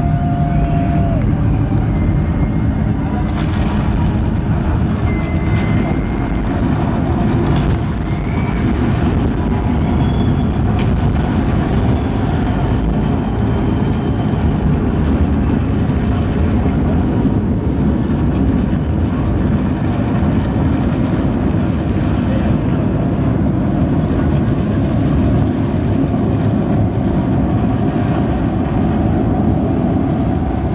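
A loud, steady, low rumbling drone fills the arena over the PA, with audience cheering and a few whistles rising above it, mostly in the first third.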